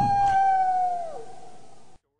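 Wolf howling: one long, steady note that drops in pitch and fades about a second in, then cuts off abruptly just before the end.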